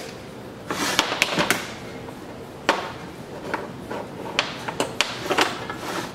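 Scattered clicks and light knocks of engine parts being handled on a workbench: a fuel hose and a snowmobile oil injection pump being worked beside an aluminium engine crankcase. There is a cluster of sharp knocks about a second in and a few more through the second half.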